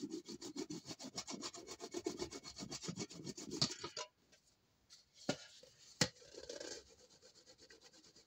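A white Teflon block is rubbed in fast back-and-forth strokes over the thin metal of a dented phonograph horn, burnishing a dent smooth. About four seconds in the rubbing stops, and there are two sharp knocks as the horn is handled.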